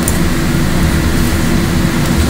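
Steady low rumble with a constant hum from the meeting room's ventilation, picked up by the open table microphones.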